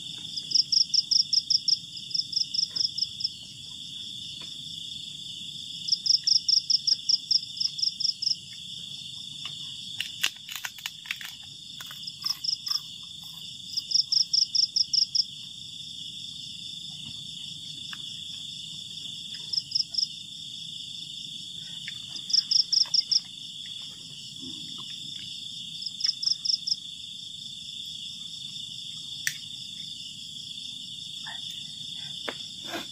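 Night insect chorus: a steady high-pitched drone, with louder rapid chirps in short trains of about a second, about eight pulses a second, repeating every few seconds.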